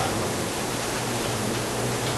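Steady, even hiss with a faint low hum underneath: the room tone and recording noise of a lecture-room recording.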